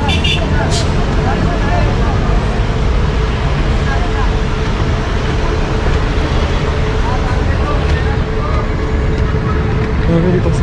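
Steady road traffic noise from cars, buses and jeepneys running on a busy multi-lane city road below, with a few faint voices.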